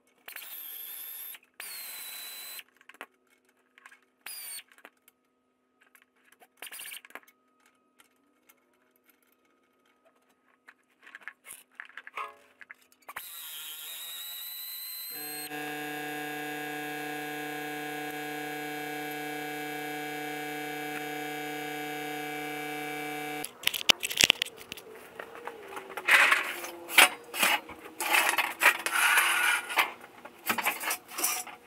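Intermittent scraping and clicking of hand tools working rusted exhaust fasteners under a car. Then a steady held chord for about eight seconds that cuts off suddenly. Near the end comes loud, irregular metallic clanking as the exhaust mid-pipe is pulled free and handled on the concrete floor.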